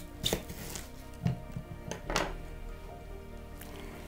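A kitchen knife cutting through a chayote fruit against a wooden table: three short cutting knocks about a second apart, over quieter background music.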